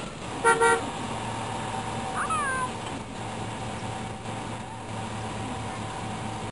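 A single short car-horn honk, a stock sound effect, about half a second in, over steady outdoor camcorder background noise. A brief falling chirp follows about two seconds in.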